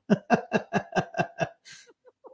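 A man laughing: a run of about seven quick 'ha' pulses, about five a second, fading away and ending in a breathy intake of air.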